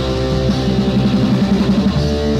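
Punk rock song, an instrumental passage with no vocals: electric guitar playing fast repeated notes over the band.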